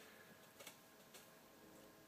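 Near silence: faint room tone with a couple of faint light ticks, about half a second and a second in, from a clear plastic tub being tilted in the hand.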